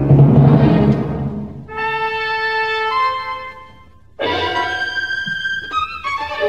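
Symphony orchestra playing modern orchestral music in a 1956 radio recording: a loud low rumble that fades over the first second, then held high notes, a brief break about four seconds in, and a loud sustained chord after it.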